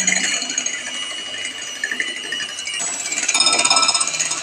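Electric hand mixer running, its beaters whipping egg whites in a bowl. The motor's whine is steady, then shifts higher and a little louder about three seconds in.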